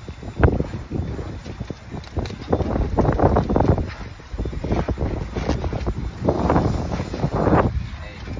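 Wind buffeting a phone microphone outdoors on a boat, coming in uneven gusts, with a sharp knock about half a second in.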